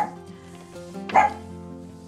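Background music with steady held notes, and one short, sharp sound about a second in.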